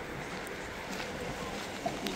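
Steady wind rushing on the microphone, an even hiss with a brief faint tone near the end.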